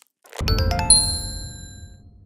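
Chime sound effect of an animated logo sting: a quick run of bright bell-like dings over a low whoosh starts about half a second in. The loudest ding comes near one second, and then they all ring away.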